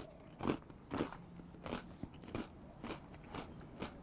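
A person chewing a mouthful of crunchy Kellogg's Tiger Paws cereal snack pieces: a series of faint crunches, about two a second.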